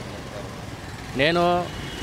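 Steady low rumble of street traffic with a vehicle engine running, under a man's voice saying one word a little over a second in.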